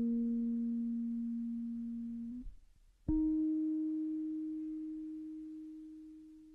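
Isolated electric bass guitar playing two long sustained notes, each left to ring and fade. The first is already sounding and stops about two and a half seconds in; after a short gap a second, higher note is struck and rings out slowly.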